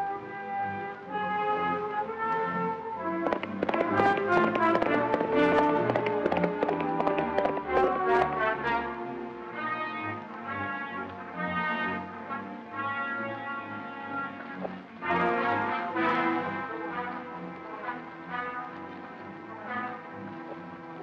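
Background film-score music with brass, the notes held and changing in steps, and a run of sharp percussive hits for several seconds early on.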